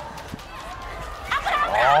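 Low background noise in an indoor futsal arena with a faint knock, then, a little over a second in, several voices exclaiming at once, their pitch rising.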